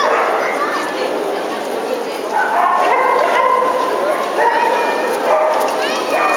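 Small dogs, papillons, yipping and whining repeatedly over a steady background of people talking.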